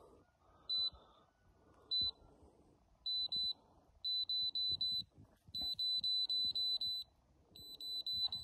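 Protimeter Balemaster bale moisture meter beeping: a short high electronic beep once about a second in and again about two seconds in, then pairs, then quickening runs of beeps until they come rapidly, as the moisture reading climbs past 20%.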